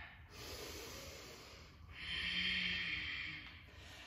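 A woman's long, audible deep breath, starting about two seconds in and lasting about a second and a half, over a faint hiss of breath before it.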